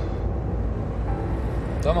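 Steady low rumble of a moving car's engine and tyres, heard inside the cabin.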